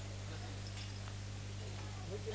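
Steady low electrical hum from the stage's sound system in a lull, with only faint scattered background noises over it.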